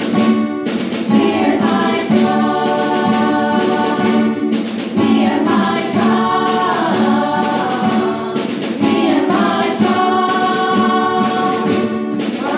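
Small women's choir singing with acoustic guitar accompaniment.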